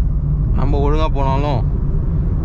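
Steady low rumble of road and engine noise inside a Honda City sedan at highway speed, its i-VTEC petrol engine cruising. A voice is heard in the middle.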